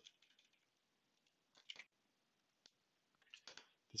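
Near silence with a few faint computer keyboard and mouse clicks, in small clusters about one and a half seconds in, near three seconds and again just before the end, as a stock ticker is typed into a search box and picked.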